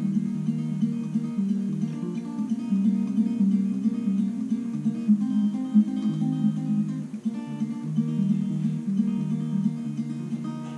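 Acoustic guitar with a capo, fingerpicked in a steady arpeggio pattern, one string at a time, so the notes ring into each other over a repeating chord progression.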